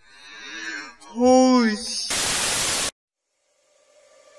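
A loud, drawn-out vocal cry whose pitch rises and falls, about a second in. It is followed by a burst of static hiss that lasts under a second and cuts off abruptly into silence. Faint steady music tones begin near the end.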